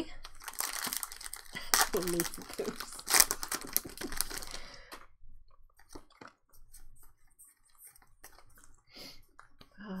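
Foil booster-pack wrapper crinkling and tearing as a Pokémon card pack is ripped open, for about five seconds. This is followed by quieter, scattered ticks of the cards being handled.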